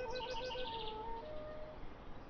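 Background music: a melody of held and rapidly pulsing notes that thins out after about a second, with a fast, high chirping trill over it in the first second.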